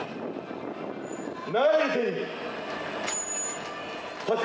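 A single drawn-out shouted call, rising then falling in pitch, about a second and a half in, over the steady murmur of a street crowd. A thin high tone comes in about three seconds in.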